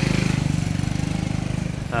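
A small motorcycle engine running close by at a steady pitch with a fast, even pulse, fading out near the end.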